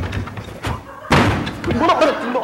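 A sudden loud thud about a second in, followed by a voice.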